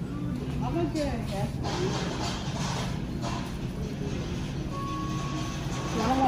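Supermarket aisle ambience: indistinct voices over a steady low hum, with a short single beep-like tone near the end.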